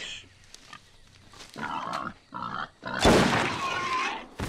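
Wild boar grunting in short bursts, then a much louder, harsher burst about three seconds in.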